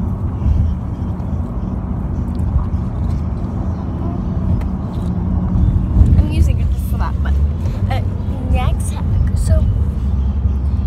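Steady low rumble of engine and road noise inside a car's cabin. From about six seconds in, short voice sounds with rising and falling pitch come over it.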